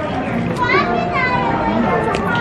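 Voices of people talking, with a high-pitched voice, like a child's, calling out from about half a second in.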